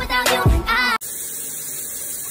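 Music with singing and a beat for about a second, cut off abruptly by the steady hiss of a shower running.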